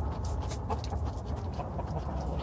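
Chickens clucking quietly over a steady low rumble.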